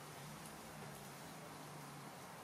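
Quiet room tone: a steady faint hiss with a low hum, and no distinct sound events.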